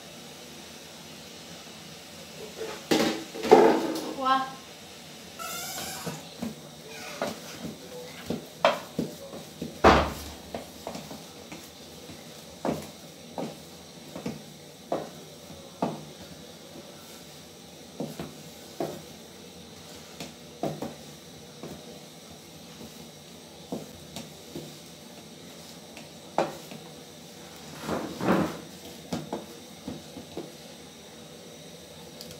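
Metal and wooden spoons scraping and knocking against an aluminium cooking pot as a thick mash is stirred and scooped: a scattered series of short, sharp taps and clicks, loudest about three to four seconds in and again near ten seconds.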